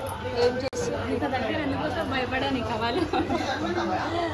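People talking and chattering in Telugu, with a brief drop-out in the audio a little under a second in.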